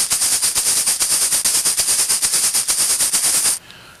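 A loud, even, rapid rattle of sharp clicks, about ten a second, that cuts off abruptly about three and a half seconds in.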